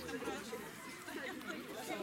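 Indistinct chatter of several voices talking at once in the background, no words clearly picked out.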